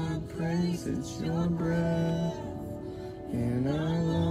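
Praise and worship song: a low voice sings long held notes, sliding up into each one.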